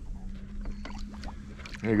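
A largemouth bass being released over the side of a fishing boat, with a few short splashes and knocks of water and hull, over a steady low hum.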